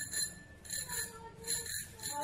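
Handlebar bicycle bell on a child's bicycle, rung about four times in quick succession, each ring fading before the next.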